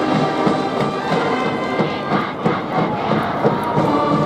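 Large high-school brass band with sousaphones and drums playing a loud cheering tune in the stands: held brass chords over a steady drum beat.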